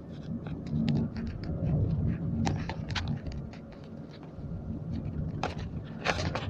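Low steady rumble of a moving vehicle heard from inside, with scattered clicks, crackles and rustles from a handheld phone and clothing.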